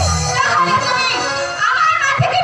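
A woman's voice singing through a microphone and PA, with live instrumental accompaniment and a low drum stroke at the start.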